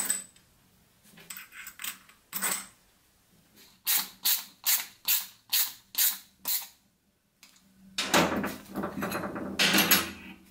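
Hand screwdriver with a socket bit tightening the bolts of an aluminium wheel-hub plate: a run of seven evenly spaced, ratchet-like clicks, about three a second. Near the end comes a longer, rough scraping sound as the wheel is handled on the metal bench.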